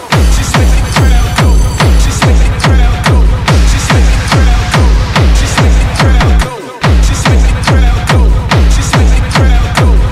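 Techno DJ mix: a heavy four-on-the-floor kick drum at about 140 beats a minute, with hi-hats, comes in at the start. The kick drops out for a moment about six and a half seconds in, then carries on.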